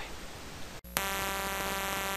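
Faint hiss, then a brief dropout, and about a second in a steady buzzing electrical hum with many overtones starts and holds at an even level.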